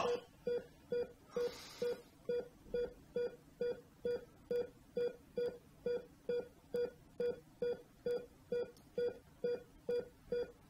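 Faint, steady run of short electronic beeps, a little over two a second, each the same single pitched tone.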